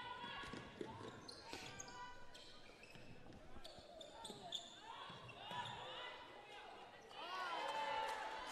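Quiet live court sound from a basketball game in an indoor hall: shoes squeaking briefly on the hardwood floor, the ball bouncing, and players' voices calling out, louder near the end.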